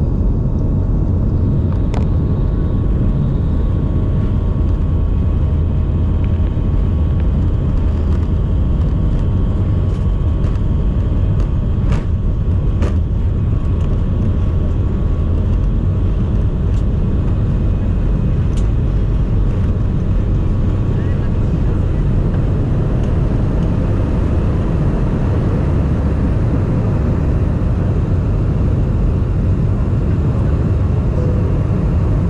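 Jet airliner's engines at takeoff thrust, heard from inside the cabin as a loud, steady, low noise through the takeoff roll and lift-off. A few short sharp clicks or rattles come about two seconds in, between about ten and thirteen seconds, and once more later.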